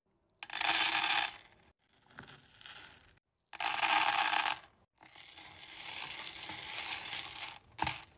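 Hard wax beads pouring from a metal scoop into the empty stainless steel pot of a wax warmer, rattling against the metal. There are two pours of about a second each, then a longer, quieter stretch of rattling.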